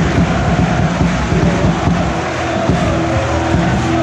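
Loud stadium crowd noise from a packed football stand, with music and its steady held notes coming in about halfway through.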